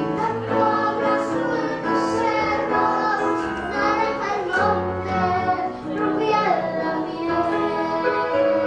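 A young girl singing a slow, sustained melody into a microphone, accompanied by piano.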